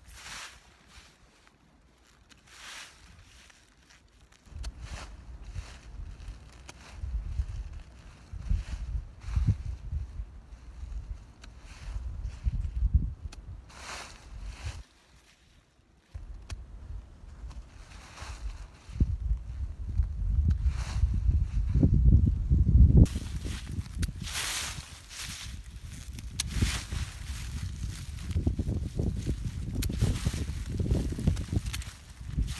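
Wind rumbling on the microphone in uneven gusts, with scattered crisp rustles of dry leaves and snips as old strawberry leaves are cut off with hand shears.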